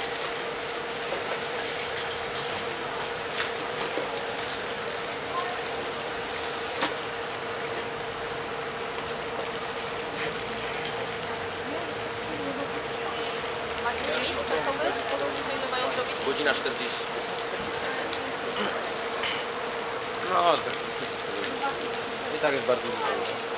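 Outdoor background noise with a constant steady hum and faint distant voices, which pick up in the last third. A few light clicks.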